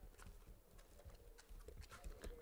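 Near silence with faint, irregular clicks of typing on a laptop keyboard.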